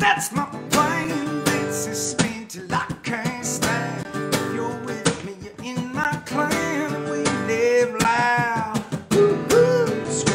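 Acoustic guitar strummed steadily, with a man singing along over the chords.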